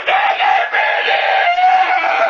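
A cartoon character's long, high-pitched scream, held on one slightly wavering note that sags a little in pitch.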